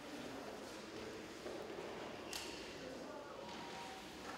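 Room tone of a large, echoing gallery hall: faint, indistinct voices murmuring in the background, with a few short clicks or footsteps on the hard floor, the sharpest a little after two seconds in.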